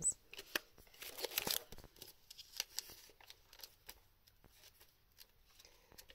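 Pages of a guidebook being leafed through: paper rustling, with the busiest burst about a second in, then a few lighter paper ticks and handling noises that thin out.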